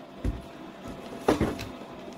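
Plastic containers knocking as an instant-coffee canister is pressed down hard into a plastic cup to compact packed birdseed. There is a faint dull knock near the start and a louder one a little over a second in.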